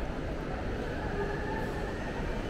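Steady low rumble of a large, busy indoor shopping-mall atrium, with no sudden sounds standing out.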